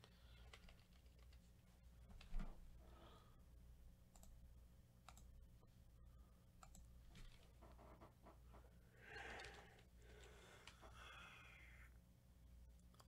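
Near silence with a low hum, broken by scattered faint clicks, one short knock about two and a half seconds in, and a soft rustle-like patch near the end.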